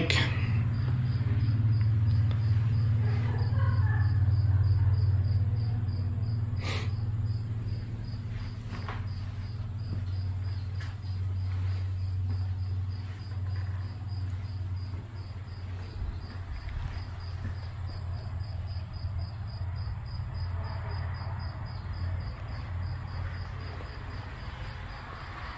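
Cricket chirping in a regular high pulse, a couple of chirps a second, over a louder steady low hum. A single knock about seven seconds in.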